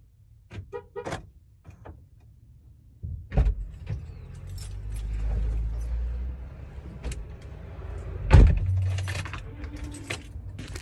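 Keys jangling and sharp clicks inside a car, then the car's low steady rumble from about three seconds in, with a loud thump near the end.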